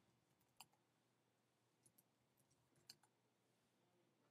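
Near silence, broken by two faint, sharp clicks at a computer: one about half a second in and one near three seconds.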